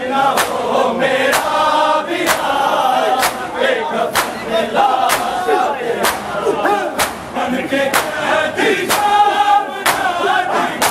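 Matam: a crowd of mourners striking their bare chests with open hands in unison, sharp slaps about once a second. A loud chorus of men chants a noha over the beat.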